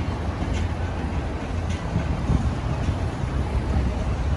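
Busy city street noise: a steady low rumble of traffic, with wind noise on the microphone. Faint ticks come about once a second.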